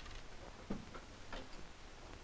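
Steady hiss of a worn 16mm film's optical soundtrack during a pause in the dialogue, with two faint clicks about two-thirds of a second apart.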